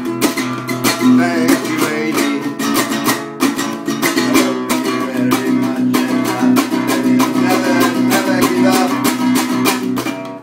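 Classical acoustic guitar strummed fast in a steady, driving rhythm, chords ringing continuously.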